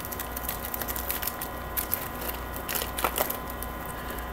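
Foil trading-card pack wrapper crinkling and tearing as it is opened by hand, a run of small crackles and ticks, with a steady electrical hum underneath.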